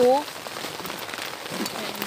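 Rain falling on a tent, heard from inside as a steady, even hiss.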